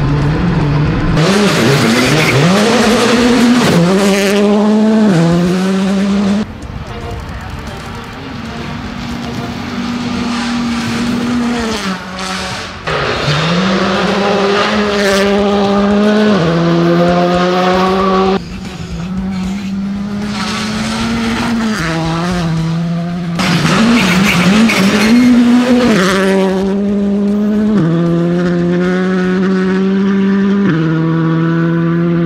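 Skoda Fabia R5 rally car's turbocharged four-cylinder engine at full throttle, its pitch climbing and then dropping at each upshift, over and over. The sound jumps abruptly between clips several times.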